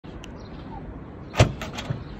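A car's boot lid opened from the key fob: a single sharp clunk as the latch lets go about one and a half seconds in, then a few lighter clicks as the lid lifts.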